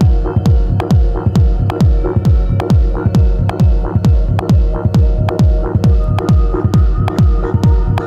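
Techno in a DJ mix: a steady four-on-the-floor kick drum at about two beats a second, each kick dropping in pitch, with crisp hi-hats between the beats and held synth tones underneath. A higher held synth note comes in about six seconds in.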